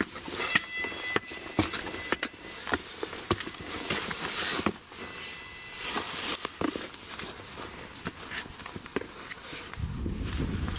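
Footsteps of a person walking briskly over rough ground, with irregular knocks and rustle from a hand-held camera and clothing.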